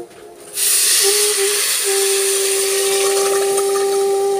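Water poured into a hot pressure cooker of fried rice and lentils, hissing and sizzling loudly from about half a second in as it hits the hot pan.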